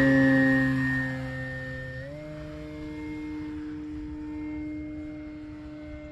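The electric motor and propeller of an E-Flite Carbon Z Cessna 150T RC plane on its takeoff run, making a steady whine. The whine is loudest at first and fades as the plane moves away. About two seconds in it steps up in pitch and then holds steady.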